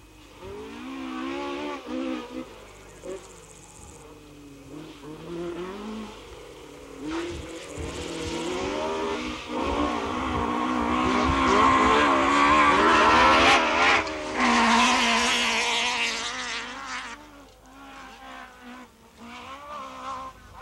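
A competition car's engine revving hard on a dirt course, its pitch rising and falling again and again with throttle and gear changes. It builds from about seven seconds in, is loudest in the middle as the car comes close, and falls away a little before the end.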